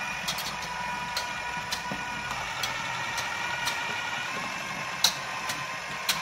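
A wire whisk clinking now and then against a stainless steel mixing bowl as slaw is stirred, with a sharper clink about five seconds in. Under it runs a steady mechanical hum.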